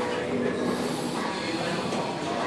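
Steady gym background noise, a dense rumbling hiss with faint held tones coming and going, and a brief high hiss about a second in.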